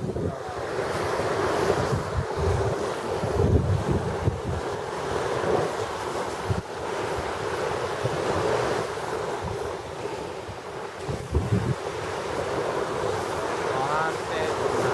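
Surf washing onto a beach, heard as a steady rush, with wind buffeting the microphone in irregular gusts.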